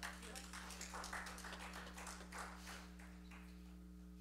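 Faint, brief scattered clapping from a few people in the audience, dying out after about three seconds, over a steady low electrical hum.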